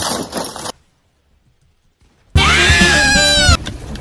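Hissing noise that cuts off under a second in, then after about a second and a half of silence a loud scream-like cry held for just over a second, rising at the start and falling away at the end.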